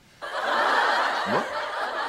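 Sitcom audience laughter breaking out about a quarter second in and carrying on steadily, in reaction to a punchline.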